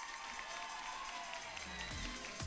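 Music fading in, growing steadily louder, with a long held note.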